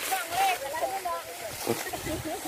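Voices of several field workers talking and calling out, with a brief rustle about a quarter of the way in and a short knock near the end.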